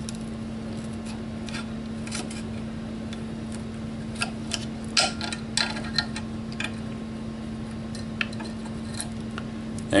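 Light metal clicks and scrapes as a Kel-Tec KSG mag plug bolt is wiggled out of its mag plate with fingers and a screwdriver. The clicks are scattered and come thickest in the middle, over a steady low hum.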